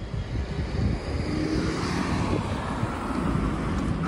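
Street traffic noise: a steady, broad rumble of vehicles with no distinct events.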